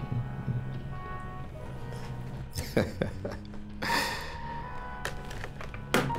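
A song playing on the radio, with a man's brief laugh about three seconds in.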